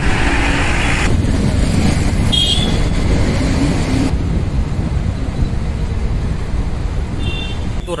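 Steady road and engine rumble heard from inside a moving vehicle, with wind noise on the microphone strongest in the first second. Two brief high tones, like a short horn beep, sound about two and a half seconds in and again near the end.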